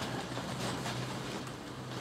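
A steady low hum over faint background noise, with a few light handling rustles.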